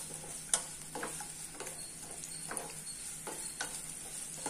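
Sliced onions and green chillies frying in oil in a non-stick pan, with a steady light sizzle. A wooden spatula scrapes and taps the pan in several separate strokes as they are stirred.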